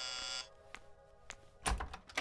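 An electric doorbell buzzes and cuts off about half a second in. Then a few sharp clicks and a heavier thump as the door's latch is worked and the door is pulled open.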